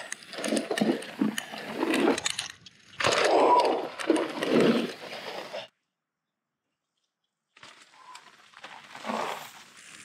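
Mountain bike riding over a rough dirt trail, with tyres on dirt and chain and frame rattling in irregular clatters and sharp clicks. The sound cuts to complete silence for about two seconds a little past halfway, then the riding noise comes back more quietly.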